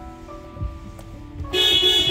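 Background music, with a couple of soft low thumps. About one and a half seconds in, the Toyota Voxy's horn sounds loudly and holds on steadily.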